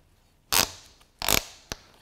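Plastic ratcheting lockdown strap on a Yakima spare-tire bike rack's frame cradle being cinched tight around the bike frame: two short ratcheting rasps, then a single click.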